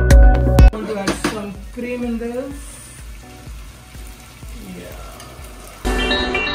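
Vegetables sizzling in an oiled frying pan as they are stirred with a spatula. Loud background music cuts out under a second in and comes back just before the end.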